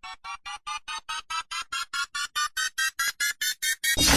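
Synthesized build-up effect: a run of short, repeated keyboard-like notes that speed up and rise in pitch and loudness.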